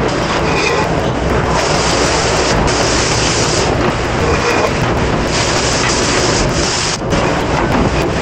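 Commercial conveyor dishwasher running with a steady rush of wash water. Twice, a louder hiss of spraying water rises over it for a second or two.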